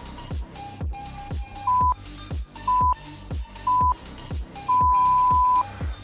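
Electronic background music with a heavy bass drum about twice a second. Over it a workout interval timer beeps three short times and then once long, a countdown marking the end of an exercise interval.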